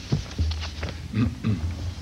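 Short, indistinct low voice sounds with scattered clicks and knocks, over a steady low electrical hum.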